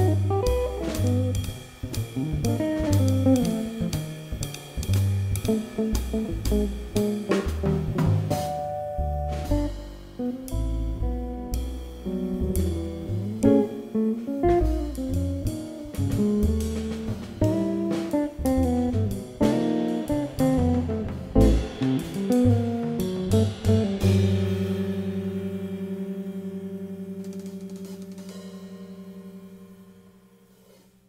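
Jazz trio of electric guitar, upright double bass and drum kit playing, bringing the tune to its end about 24 seconds in on a held final chord that rings and slowly fades away.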